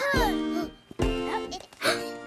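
Cartoon background music with three quick springy jump sound effects, each a soft thud with a brief pitch swoop, as animated characters hop from stone to stone.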